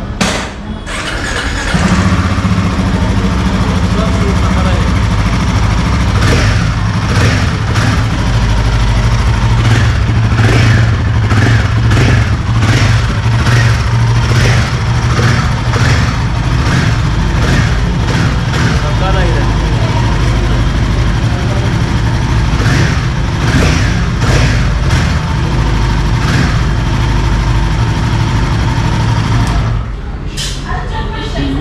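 Royal Enfield Himalayan 450's 452 cc liquid-cooled single-cylinder engine started about two seconds in, then running loudly and steadily, with a series of short sharp pulses through the middle.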